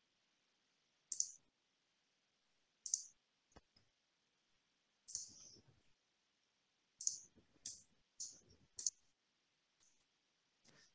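Faint computer mouse clicks, about eight short clicks at irregular intervals, picked up by a headset microphone while a screen share is being set up.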